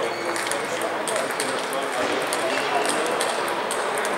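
Busy table tennis hall: celluloid-type plastic balls clicking off bats and tables at many neighbouring tables, irregular and overlapping, over a steady background of voices.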